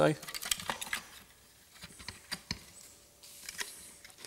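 Small plastic clicks and taps as the electronic park brake module's gearbox and motor assembly is handled and set back into its plastic housing. The clicks come in a quick scatter in the first second, then a few more spaced out.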